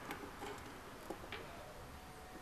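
A few faint, irregular light ticks of plastic knitting needles as stitches are worked, over quiet room tone.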